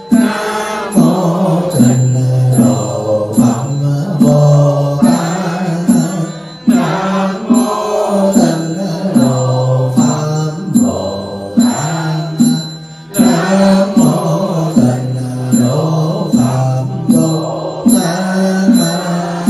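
Buddhist monk chanting a sutra through a handheld microphone, a steady, rhythmic recitation on a few repeated pitches, with short regular knocks keeping time.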